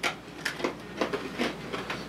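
People biting into and chewing hard gingerbread: a few short, sharp crunches spread over the two seconds.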